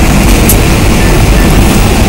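Strong wind gusting through an open window and buffeting the microphone, with heavy rain blowing in. It makes a loud, steady rush with a deep rumble underneath.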